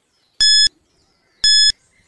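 Countdown timer beeps: two short, high electronic beeps, one a second, ticking off the last seconds of a quiz countdown.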